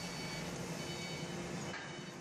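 Steady industrial shop noise: a constant hiss with a low steady hum and a faint high whine, from machinery around a water quench of a red-hot steel pipe.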